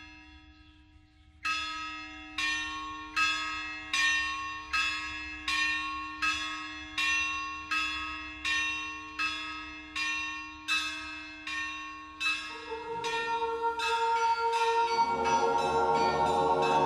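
A bell tolling at an even pace, about four strokes every three seconds, each stroke ringing out and fading. From about twelve seconds in, a sustained musical chord swells up beneath the strokes.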